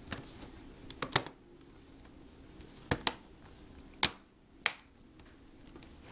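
The plastic clips of an HP Mini 210 netbook's base panel snapping into place as the panel is pressed down: about five sharp clicks spread over a few seconds, two of them close together about a second in.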